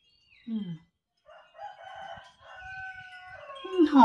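A long drawn-out bird call in the background, starting about a second in, held steady and falling in pitch near the end.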